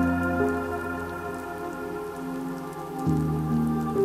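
Atmospheric future-garage electronic music: held synth pad chords over a deep bass that moves to a new note about three seconds in. A sampled rain patter is layered in the mix.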